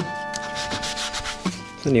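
A held acoustic guitar chord from background music rings on and stops about one and a half seconds in. Under it is a faint rubbing noise.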